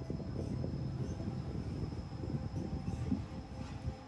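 Low, uneven rumble of wind buffeting a phone microphone outdoors by the sea.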